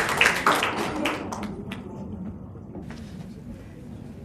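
Audience applause dying away over the first second or so, leaving a few scattered claps and taps in a quiet hall.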